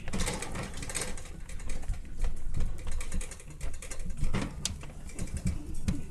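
Rapid scratching and rustling as a puppy paws, bites and tugs at a plush toy on a puppy pad, with a few sharp clicks about halfway.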